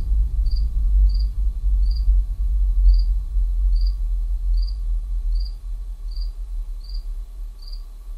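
A cricket chirping steadily, about three high chirps every two seconds, over a low rumble that fades through the second half.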